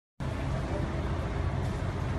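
Road traffic: a car driving past, with a steady low rumble of engine and tyres.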